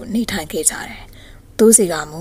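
Speech only: a woman narrating a story in Burmese, with a brief softer pause partway through.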